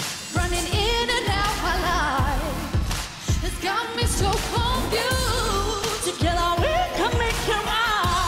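Pop song performed live: female voices singing wavering vocal runs into microphones over a backing track with a steady drum beat.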